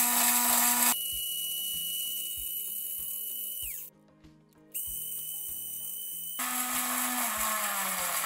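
Mixer grinder motor running at max speed, grinding fennel seeds in the small chutney jar, a dense grinding noise with a steady low hum. About a second in it cuts out abruptly. A quieter steady high whine with soft regular beats follows, dips in pitch and stops briefly near the middle, then returns. The grinding noise comes back near the end.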